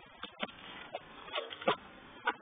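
Four short, faint clicks and knocks at irregular spacing, like handling noise as the phone and vacuum are moved about.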